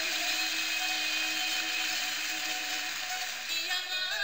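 Music: a song holding one long sustained note over a dense accompaniment.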